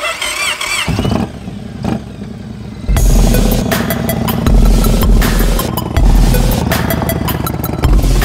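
A V-twin cruiser motorcycle engine starts about a second in and runs. From about three seconds in, loud electronic music with a heavy bass beat comes over it and is the loudest sound.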